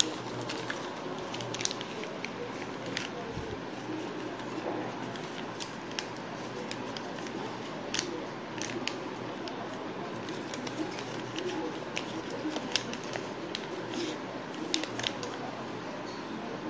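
Sheet of paper folded and creased by hand, giving scattered short crisp crackles and clicks as it is pressed and flattened.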